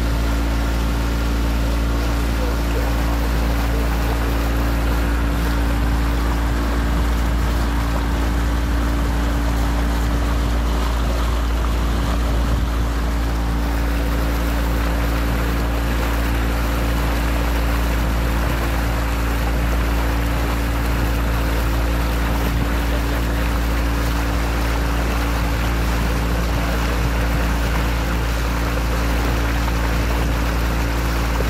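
Tour boat's engine running at a steady speed, a deep even drone, with water washing along the hull as the boat cruises.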